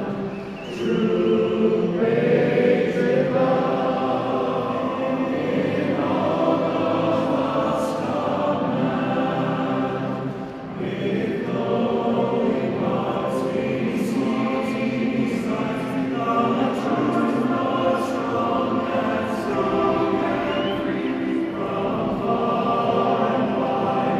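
A national anthem sung by many voices together, in long held, slow phrases.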